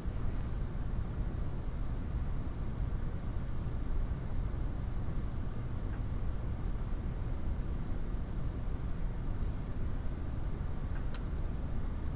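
Steady low background rumble and hiss of room noise picked up by the microphone, with one faint click near the end.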